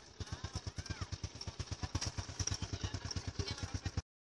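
A small engine running steadily nearby, its firing coming as rapid, even pulses about ten a second.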